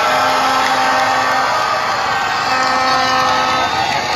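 A rally crowd cheering, with two long horn blasts of several steady tones, one near the start and another past the middle.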